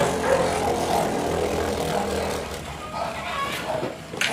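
Beyblade Burst spinning top whirring steadily on the plastic floor of a stadium bowl, gradually getting quieter.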